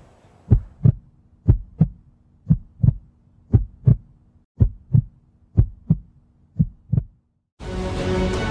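Heartbeat sound effect: seven double thumps, about one pair a second, over a faint steady hum. It stops shortly before the end, and music starts right at the end.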